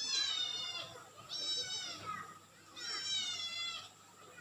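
A cat meowing three times, each meow high-pitched, under a second long and dropping slightly in pitch at the end.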